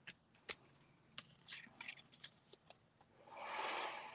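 Faint paper handling: pieces of cut scrap paper slid and pressed down by hand on a card base. A few light taps come through it, and there is a soft rustle near the end.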